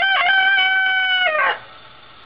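A rooster crowing: one long cock-a-doodle-doo that holds its pitch, then drops and ends about a second and a half in.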